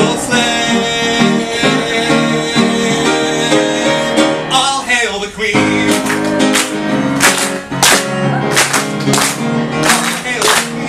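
A man singing to his own grand piano accompaniment in a live performance: a long held note over piano chords, a short break about halfway, then the song goes on with sharp beats about twice a second.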